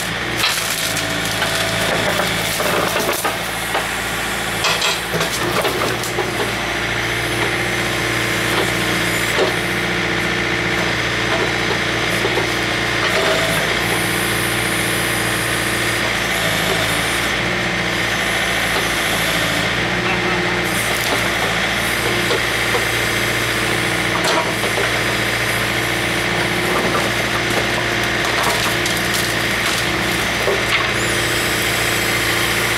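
John Deere 110 tractor-loader-backhoe engine running steadily under hydraulic load as the backhoe bucket works among logs, with scattered wood crunching, cracking and scraping.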